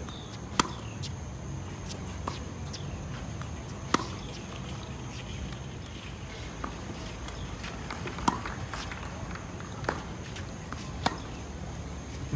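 Tennis balls struck by rackets in a baseline groundstroke rally: sharp pops every couple of seconds, some louder than others, with softer hits and bounces between.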